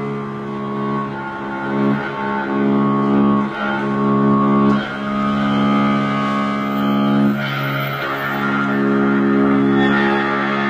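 Strings of an amplified electric stringed instrument played with a bow: a sustained drone of several steady pitches held together, the notes shifting a few times as the bow moves.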